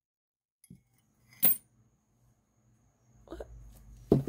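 Coins taken from a change cup and set down on a dollar bill on a table: a faint tap, then one sharp, ringing clink about a second and a half in. A short vocal sound follows near the end.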